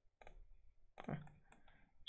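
Faint clicking of a computer mouse: a few quick clicks near the start, with a brief spoken 'ah' about a second in.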